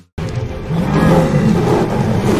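Film-trailer sound design starting after a split second of silence: a loud, dense low rumble with a drawn-out growl-like roar, as of a tiger, mixed with music.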